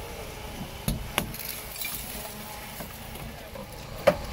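Metal knocks from rescue work on a wrecked van's bodywork: two sharp knocks about a quarter second apart, a little under a second in, over a steady low rumble.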